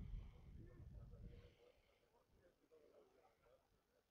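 Near silence outdoors: a faint low rumble of wind on the microphone that dies away after about a second and a half, with faint distant voices.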